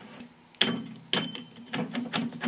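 Metal knocks and clicks from a welding turntable's three-jaw chuck and the steel pipe held in it. There are two sharp knocks about half a second apart, each with a short metallic ring, then a few lighter clicks.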